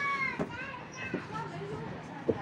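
Background voices of children and adults chatting and calling out, with a high child's voice trailing off near the start.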